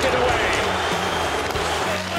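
Crowd noise in an ice hockey arena during live play, with occasional knocks of sticks on the puck.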